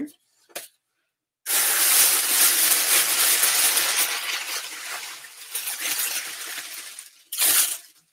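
Tissue paper crinkling and rustling as it is pulled out of a cardboard box. It is a dense, irregular crackle that starts suddenly about a second and a half in, lasts about six seconds, and is followed by one more short rustle near the end.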